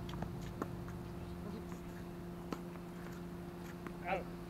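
Tennis balls struck by rackets and bouncing on a hard court: a handful of short, sharp pops at irregular intervals, the clearest about half a second in and about two and a half seconds in. A steady low hum runs underneath.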